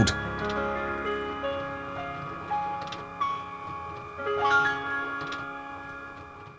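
Piano music playing from a smartphone app, a slow melody of sustained notes, with faint clicks from the LEGO piano's motor-driven keys moving up and down. The music fades toward the end.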